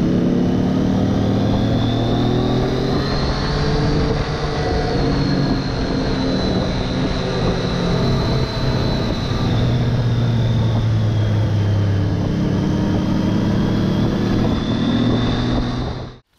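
Motorcycle engine running at road speed, its note slowly rising and falling with the throttle, under a steady rush of wind noise.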